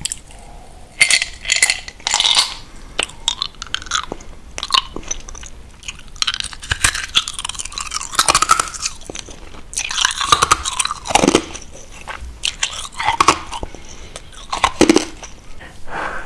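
Close-miked eating sounds: a sip from a glass at the start, then chewing and crunching with many short wet mouth clicks.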